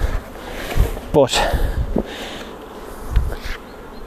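Honeybees of a queenless colony buzzing from the hive's open top, just uncovered.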